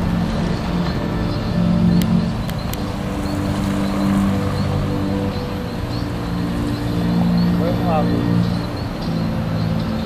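Background music with low sustained notes that change every second or so, under faint outdoor voices; a brief call near the end.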